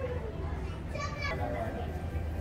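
A high-pitched voice calls out briefly about a second in, over a steady low hum of background store noise.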